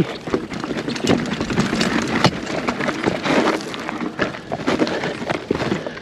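Polygon Siskiu T8 mountain bike rolling down a loose, rocky trail: tyres crunching and slipping over loose stones, with frequent sharp knocks and rattles as the wheels hit rocks.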